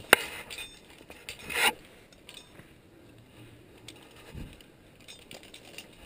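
Metal rappelling hardware and rope being handled: a sharp click, then a short scraping rush about a second and a half in, with scattered small clicks and a low thump later.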